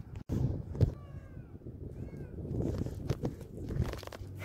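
An animal's two short calls, about a second apart, each falling slightly in pitch. Several sharp knocks and handling noise run underneath, the loudest knock just before the first call.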